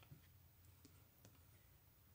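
Near silence, with a few faint clicks of cardboard game counters being picked up and set down on a board.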